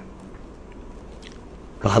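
A pause in a man's speech: faint steady background hiss with a couple of soft clicks, and his voice starting again near the end.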